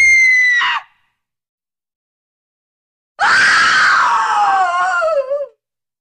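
Two high-pitched human screams with dead silence between them: a short held one that cuts off sharply, then a longer one that falls steadily in pitch.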